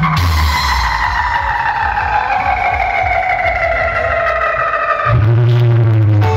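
Loud electronic music played through a dhumal's large loudspeaker rig: a long synthesizer tone slides slowly down in pitch for about five seconds, then a deep bass note comes in near the end.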